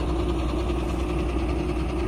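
A vehicle engine idling: a steady low hum with a constant higher tone running through it.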